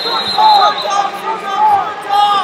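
Several voices calling and shouting at once, overlapping and echoing in a large hall, typical of coaches and spectators at a wrestling bout.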